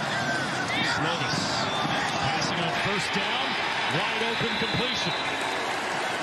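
Field audio from a football game broadcast: indistinct shouting voices over a steady background of noise.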